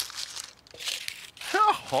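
Gift-wrapping paper crinkling and rustling as a present is unwrapped and paper is pulled out of a small cardboard box.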